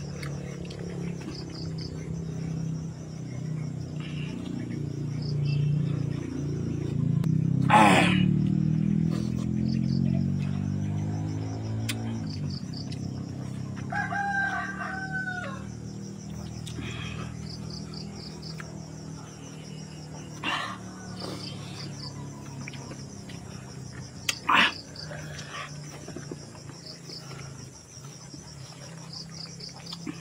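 A rooster crows once about halfway through, over steady insect chirping. A low hum swells and fades over the first dozen seconds, with a sharp knock at its loudest point and a few more knocks later.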